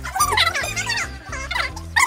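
High-pitched, warbling laughter from young women over background music with a steady, repeating bass line.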